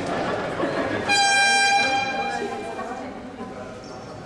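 Basketball scoreboard horn sounding once about a second in: a single steady, high, buzzing blare lasting under a second that lingers in the hall's echo. Voices murmur from the court and stands around it.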